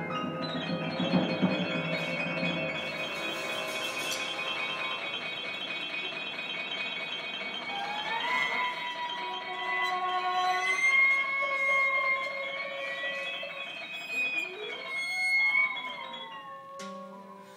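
Improvised jazz played live by a small ensemble: long held notes, with pitches sliding up into new sustained tones about eight seconds in and sliding again near the end.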